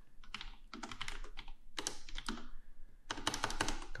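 Typing on a computer keyboard: keystrokes clicking in three short runs with pauses between them.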